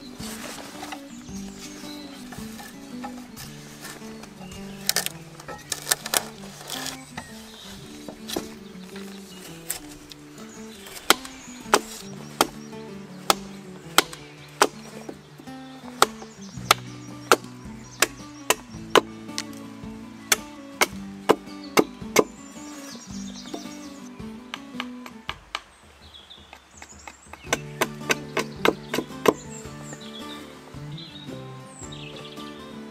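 Hatchet chopping and shaving a piece of wood on a log chopping block: sharp strikes, a few at first, then about one a second, with a quick flurry near the end, over background music.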